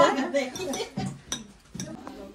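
Serving spoons and cutlery clinking against dishes as food is served, a few separate sharp clinks, with brief speech at the start.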